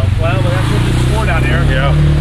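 An off-road vehicle's engine running steadily, its pitch rising a little near the end.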